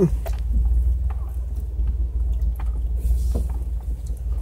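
Jeep's engine running at crawling speed on a rough trail, a steady low rumble, with scattered knocks and rattles from the body and suspension over the bumps.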